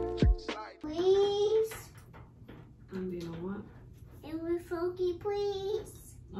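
Background hip-hop music cuts off within the first second. A toddler then babbles three times in wordless, sing-song sounds, the last one longer.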